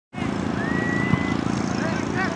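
Outdoor youth soccer game: shouting voices from players and sideline over a steady low rumble. One long high call sounds before the one-second mark, and a single thump comes just after it.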